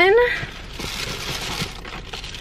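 A thin plastic carry-out bag rustles and crinkles as a hand rummages in it. There is a short spoken word at the very start.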